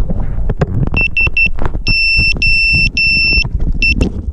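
Electronic beeper on a hand-held cinewhoop FPV drone sounding a series of high, same-pitched beeps: three quick ones about a second in, three longer ones, then one short beep near the end. Knocks and rubbing from the drone being handled, with wind on the microphone, run underneath.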